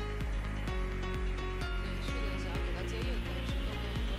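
Background music with a steady beat and a sustained low bass.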